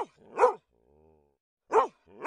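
A dog barking: three short, high barks, each rising then falling in pitch, about half a second apart and then again near the end.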